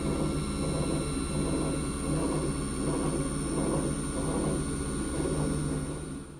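Organ blower's electric motor running with its bearings rattling, like a bunch of marbles rattling around in a cage: the sign of failing bearings. A steady low hum and a thin high whine run under the rattle.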